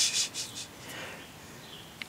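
Fingers rubbing and scraping soil off a dirt-caked Herkimer diamond (quartz crystal). There are a few short, scratchy strokes in the first second, then only faint rubbing.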